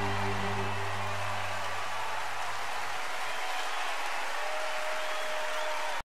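Concert audience applauding and cheering while the band's final sustained chord rings on and fades out about halfway through.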